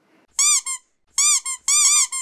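A squeaky sound effect: three quick double squeaks, each rising then falling in pitch.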